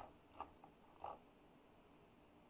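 A few last computer-keyboard keystrokes, about four short clicks in the first second, then near silence with only room tone.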